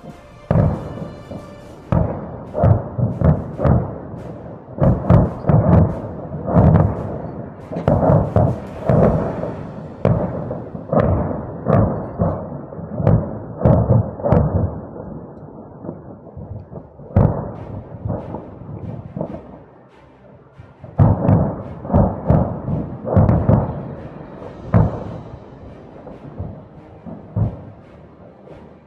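Ammunition cooking off in a burning ammunition depot: a rapid, irregular string of heavy bangs and thumps, one after another every half second or so, with a short lull about two-thirds of the way through.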